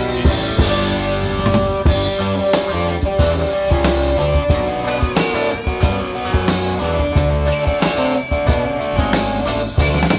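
Instrumental break of a live electric folk-rock band, with no singing: a drum kit keeps a steady beat under bass and held, sustained melody notes.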